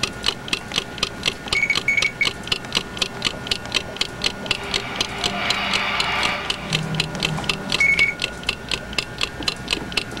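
Rapid, even ticking at about four to five ticks a second, like a wind-up clock. There are a couple of short high beeps near the start and another near the end, and a swell of hiss about halfway through.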